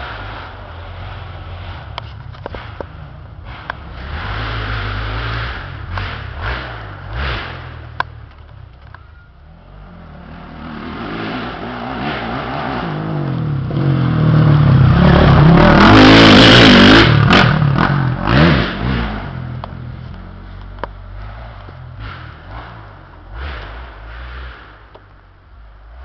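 Dirt bike engine revving up and down on a trail. It grows louder as it approaches, is loudest with rising and falling revs as it passes close about 15 to 18 seconds in, then fades as it rides away.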